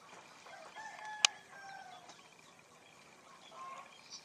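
A faint rooster crowing once: one drawn-out call lasting just over a second that drops in pitch at the end. A single sharp click sounds partway through the call.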